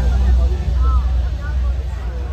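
Electronic dance music from a DJ set through a loud sound system, in a breakdown: the beat and busier layers have dropped out, leaving a heavy sustained sub-bass drone. Faint voices rise and fall above it.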